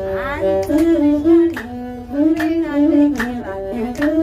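Masinqo, the Ethiopian one-string bowed lute, being bowed as accompaniment to azmari singing, the voice sliding and bending in pitch over the instrument's held notes.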